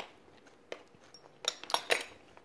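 Metal fork clicking against a plastic divided food tray while spearing a dumpling: a click at the start, another under a second in, then a quick cluster of louder clicks near the end.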